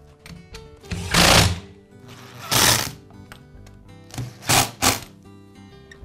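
Background music, with four loud, brief mechanical rasping bursts from work on a Poulan chainsaw's recoil starter assembly as it is refitted: two longer ones in the first half and two quick ones close together near the end.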